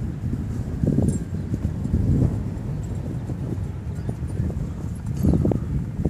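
Wind buffeting the microphone: a low, irregular rumble that swells in gusts.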